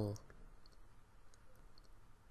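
Near-silent room tone of a voice recording, with a few faint, tiny clicks from the narrator's mouth and lips scattered through the pause.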